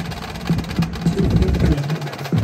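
Percussion ensemble playing a low rhythmic passage: a run of short, low pitched notes about four a second, thickening in the second half.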